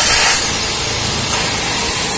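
A loud, steady hiss that starts suddenly just before and holds unchanged, like rushing air or spray.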